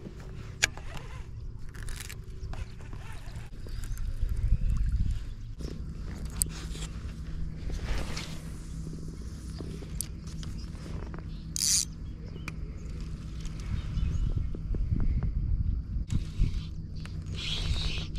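Fishing reel being cranked during a lure retrieve, with scattered clicks and knocks from handling the rod and reel over a low rumble.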